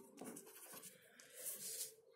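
Felt-tip marker writing a word on paper, faint.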